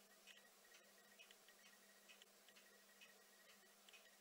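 Near silence with faint, irregular taps about two or three times a second: a Eurasian nuthatch pecking at a fat ball in a net feeder. A faint steady hum runs underneath.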